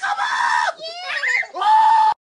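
A person screaming "Pick him up!" over and over in a high-pitched, panicked shriek, in three bursts.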